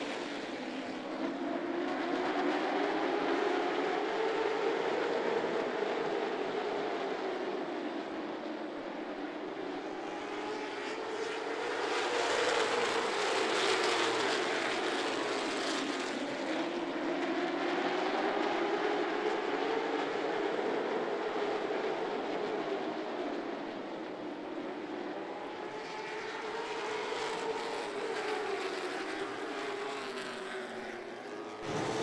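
A pack of late model stock cars' V8 engines running together around a short oval, the combined drone rising and falling in pitch and loudness about every seven or eight seconds as the field goes round.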